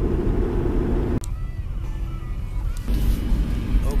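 Car cabin noise while driving on a snowy highway: a steady low rumble of road and engine. About a second in it cuts abruptly to a quieter stretch, and a louder low rumble returns near the end.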